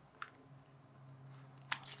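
Quiet handling of a plastic laptop battery pack and a knife: a small click a fraction of a second in and a sharper click near the end, over a faint low hum.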